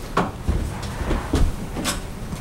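Handling noise at a wooden lectern: a few knocks and bumps as things are set down and moved on it, with a sharp click near the end.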